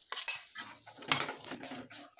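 Steel spoon scraping and stirring a thick masala paste around a metal kadhai, in repeated quick strokes, several a second: the dry spice powders being mixed into the frying masala.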